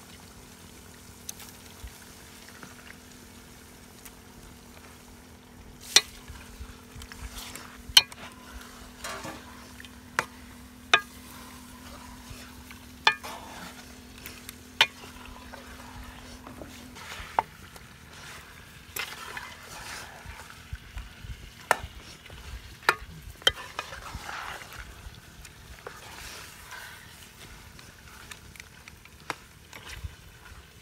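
Metal ladle and spatula stirring chicken pieces frying in an aluminium pan, the utensils knocking sharply against the pan every second or two over a low sizzle. A steady low hum runs underneath and stops a little past halfway.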